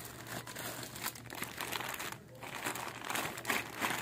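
Clear plastic bags crinkling as they are handled and pushed into a fabric backpack, in irregular bursts with a short pause about two seconds in.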